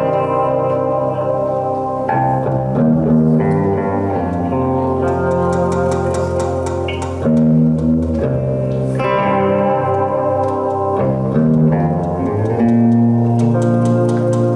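Acoustic guitar and electric guitar playing an instrumental intro together, sustained chords changing every two seconds or so.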